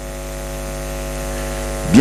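Steady electrical mains hum from the microphone and sound system, a low buzz with many even overtones, growing slightly louder.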